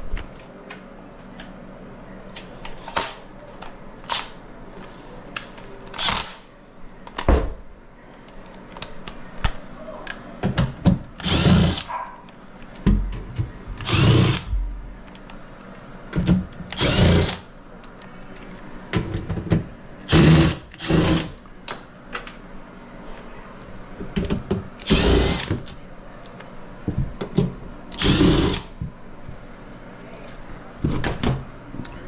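Milwaukee M12 Fuel cordless impact driver running in several short bursts, about a second each, as it removes screws from an air handler's sheet-metal access panel. Lighter clicks of handling come between the runs.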